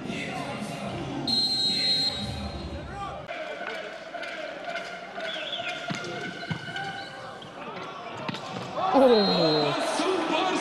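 A volleyball bouncing a few times on a hard indoor court floor, heard over the noise of an arena crowd.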